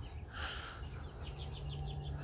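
Faint outdoor background with a distant bird giving a quick run of high chirps in the second second, over a low rumble.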